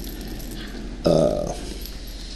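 A man's voice making one short, drawn-out hesitation sound like "uh" about a second in, over a steady low hum.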